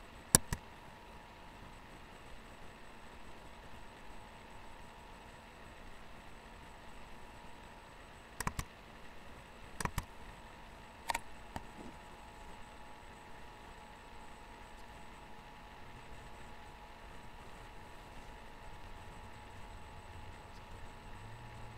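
Computer mouse clicking: a few sharp clicks, mostly in quick pairs, just after the start and again from about eight to eleven seconds in, over a steady faint hum.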